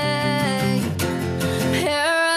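Acoustic guitar strummed under a woman's sung held note, which slides down and fades about half a second in; her voice comes back on a new note near the end.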